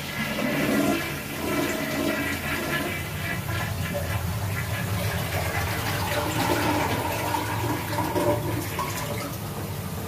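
Toilet flushing, with water rushing and then running steadily for several seconds.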